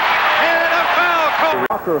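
Television play-by-play commentary over a steady arena crowd din. About three-quarters of the way through, the sound cuts off abruptly and a new clip's commentary starts, with less crowd noise behind it.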